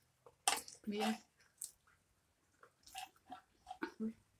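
A short murmured vocal sound about half a second in, then quiet chewing and mouth sounds from eating fried food, with a few small soft sounds near the end.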